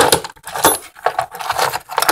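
Rapid clicking and rattling of tiny caviar nail-art beads against a glass bowl as it is handled.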